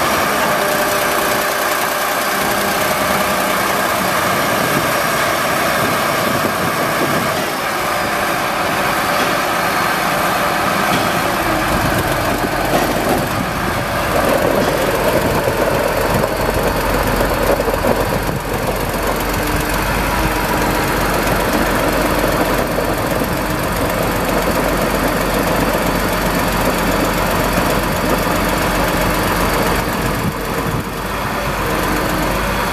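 Volvo G730 VHP motor grader's diesel engine idling steadily. About eleven seconds in, a deeper low rumble joins and the engine sound grows fuller.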